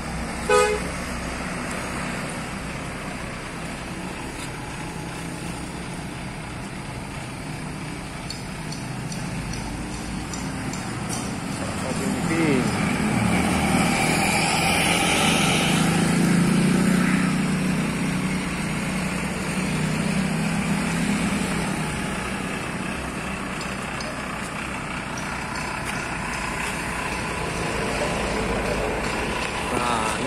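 Large diesel buses on the road: about twelve seconds in, a bus's engine rumble builds, peaks and fades over roughly ten seconds as it drives past, with a brief horn sounding as it approaches.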